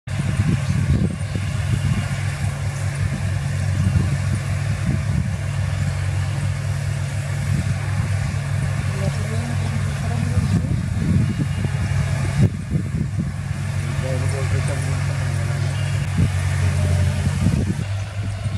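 Claas combine harvester's diesel engine running steadily, a continuous low drone, with the grain unloading auger engaged and pouring paddy into a trailer.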